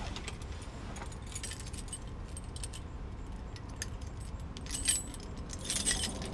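Small metal pieces jingling in short bursts, once about a second and a half in, again near five seconds and most strongly just before the end, over a low steady hum.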